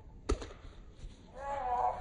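An American football smacks once into a boy's hands as he catches it on the jump, a single sharp slap. About a second later comes a short shout.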